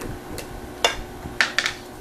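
A few short knocks and clicks, the sharpest a little under a second in, as a small container of kosher salt is handled and set down on a plastic cutting board.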